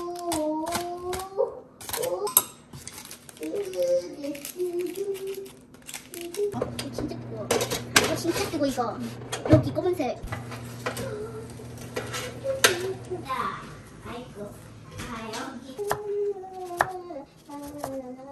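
A young child singing to themself, with sharp clicks and knocks of kitchen utensils and dishes throughout. A low steady hum runs through the middle few seconds.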